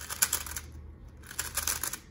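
A plastic 3x3 speedcube being turned fast by hand, its layer turns clicking and clattering in two quick flurries, the second beginning a little past halfway.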